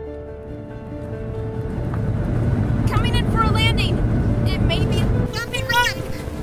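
Sound effect of a flying ship's engine rumbling as it takes off, building over the first two seconds, holding loud, then dropping away a little after five seconds, with background music.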